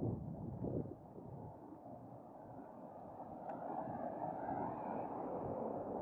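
A road vehicle passing close by along the street, its engine and tyre noise swelling to a peak about four to five seconds in and starting to fade near the end. A few wind thumps on the microphone come in the first second.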